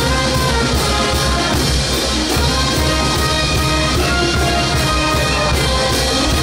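Carnival dance music from a band, with brass carrying the melody over a steady bass and drum beat.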